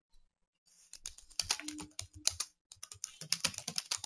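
Computer keyboard typing: after a near-silent first second, a fast, uneven run of key clicks.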